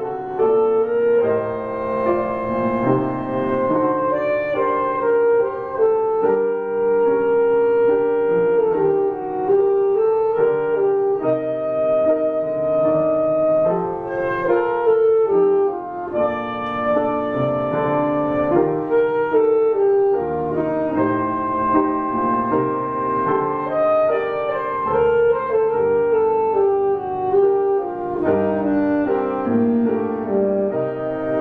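Alto saxophone playing a slow, smooth melody of held notes, with piano accompaniment underneath.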